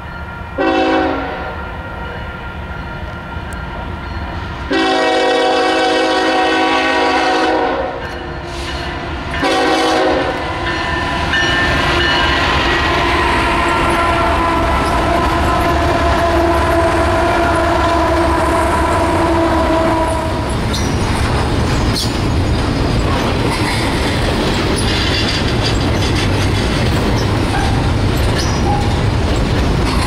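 Union Pacific freight locomotives' air horn sounding several blasts at a grade crossing: a short blast, a long one of about three seconds, another short one, then a quieter tone held until about twenty seconds in. After that the diesel locomotives and double-stack container cars rumble past, with wheels clacking over the rails.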